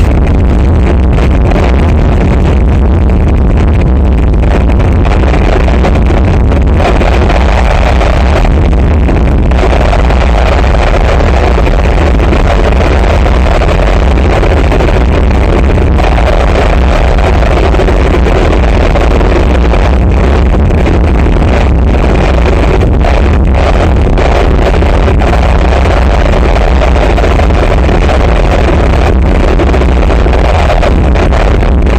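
Live harsh noise music from electronics and effects pedals: a loud, dense, unbroken wall of distorted noise with a heavy low rumble underneath.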